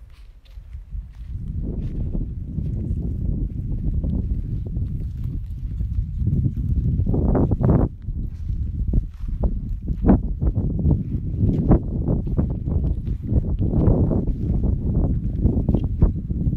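Wind buffeting the microphone in a loud, uneven rumble, with footsteps crunching on dry dirt ground.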